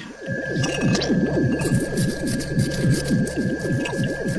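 Electronic sci-fi sound effect: a steady hum with a fast, even warble of about four to five pitch dips a second under a high held tone.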